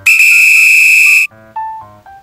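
A loud, steady electronic buzzer-like alarm tone lasting just over a second, the time-up sound of a quiz countdown timer, cutting off sharply; soft short keyboard notes of background music follow.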